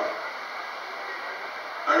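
Steady background hiss in a pause of a public-address speech, with no distinct event; a man's voice resumes near the end.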